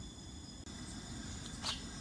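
Quiet outdoor background: a faint low hum with steady thin high-pitched tones running through it, like insects. The sound drops out for an instant just after half a second, and there is one short click about a second and a half in.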